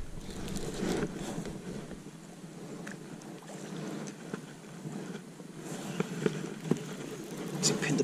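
Handling noise in a fishing kayak: a baitcasting reel being wound in, with a few short sharp knocks about six seconds in and a click near the end.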